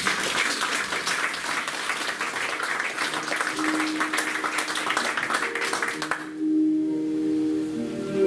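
Audience applauding, which stops about six seconds in. About halfway through, music enters under the clapping with low held notes that carry on alone after it.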